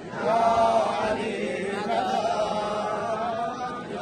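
Large crowd of men chanting together in unison, phrase after phrase, the many voices swelling right after a brief dip at the start.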